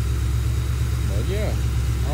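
Ford Crown Victoria Police Interceptor's 4.6-litre V8, fitted with headers and a cold air intake, idling steadily.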